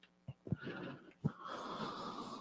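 Chalk tapping and scraping on a blackboard as a box is drawn, with a few short ticks, mixed with soft breathing.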